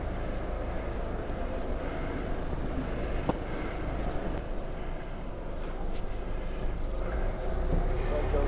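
Steady outdoor town-street background noise with a low rumble, and a single sharp click about three seconds in.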